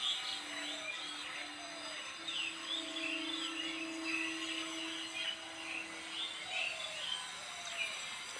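Small birds chirping again and again in the background, with a steady hum that sets in just after the start and stops about six and a half seconds in.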